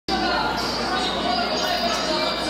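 Voices with thumping drum beats, carrying in a large hall.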